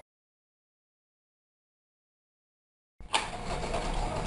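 Dead silence for about three seconds, then steady room hiss with a low hum cuts in suddenly, with a few faint ticks.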